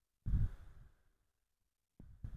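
A single breath out close to the microphone, starting about a quarter second in and fading away within a second.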